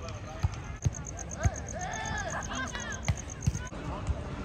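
A beach volleyball being struck by players' hands and forearms: about five sharp thumps at uneven intervals.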